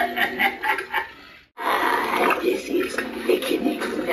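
Cauldron Creep animatronic playing its recorded spooky voice track through its built-in speaker. The sound cuts out abruptly for a moment about one and a half seconds in, then resumes.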